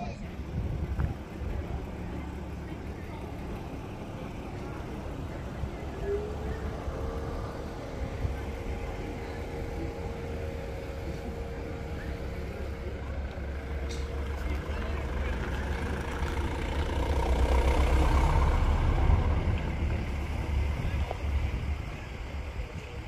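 A vehicle engine running close by under a steady low rumble. A steady hum joins about six seconds in, and the sound grows to its loudest for a few seconds near the end before easing off.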